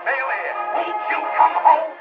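Orchestra music from a 1950 78 rpm shellac record played on a wind-up table-top acoustic phonograph. The sound is thin and boxy, with no deep bass and little treble.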